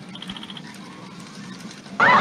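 A quick train of faint high chirps, about eight in half a second, over a low steady hum in a sci-fi film soundtrack.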